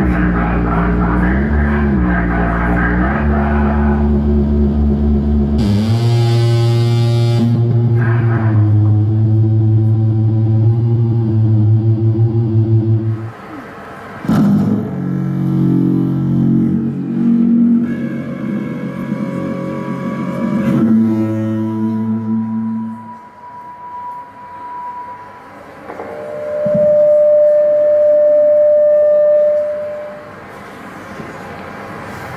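Live experimental music built from low, droning pitched tones. The tones waver in pitch at first, then hold steady, break off about halfway through, return more broken up, and give way to a loud, steady, higher held note near the end.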